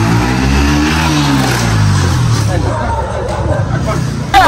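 Motorcycle engine passing close by. Its pitch rises as it approaches and falls as it goes away, fading after a couple of seconds.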